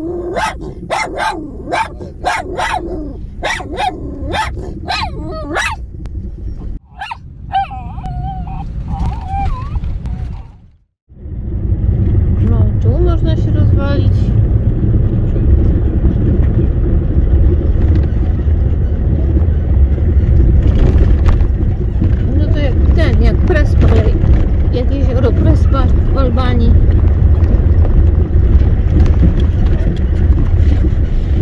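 A dog barking repeatedly, about two barks a second, for the first six seconds or so. After a short cut to silence about eleven seconds in, the steady low rumble of a Toyota Hilux driving slowly on a dirt track fills the rest.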